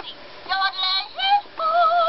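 Talking Toy Story Jessie doll playing a recorded sung phrase in Jessie's voice through its small built-in speaker: a few short notes, then a long wavering held note near the end.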